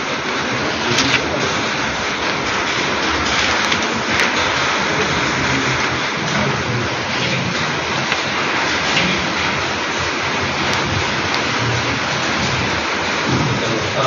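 Heavy rain falling in a steady, loud hiss.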